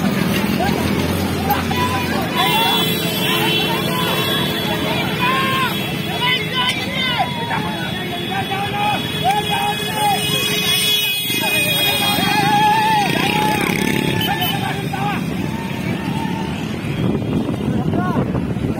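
Crowd of spectators shouting and whooping in short rising-and-falling cries, over the running engines of motorcycles.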